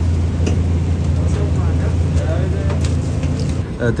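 Steady low machine hum from shawarma-kitchen equipment, with faint voices in the background and a few light utensil clicks.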